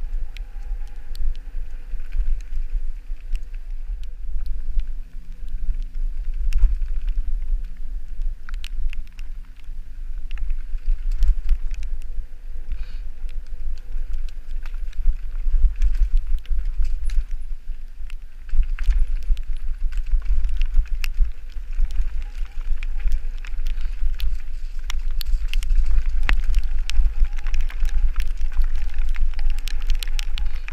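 Mountain bike riding fast down a dirt singletrack: a steady low wind rumble on the microphone, with the bike's rattles and sharp knocks over the rough ground, busier and louder in the second half.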